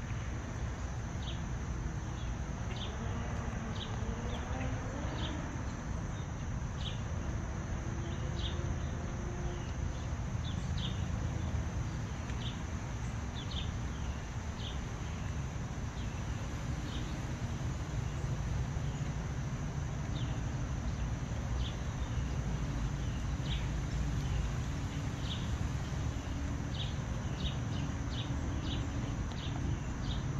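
Outdoor garden ambience: a steady high-pitched insect drone with short chirps about once a second, over a constant low rumble.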